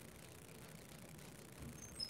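Near silence: room tone, with a faint soft knock near the end.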